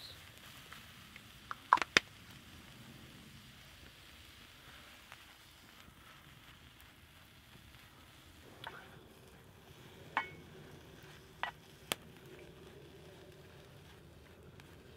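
Faint steady hiss of mushrooms cooking in a cast iron skillet over a wood campfire, with two loud sharp clicks about two seconds in. From about eight seconds in, a few lighter knocks follow as a wooden spatula stirs the mushrooms in the pan.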